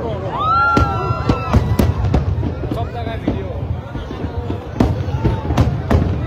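Aerial fireworks bursting: many sharp bangs at irregular intervals over a continuous low rumble, with people's voices in the crowd and one long held cry near the start.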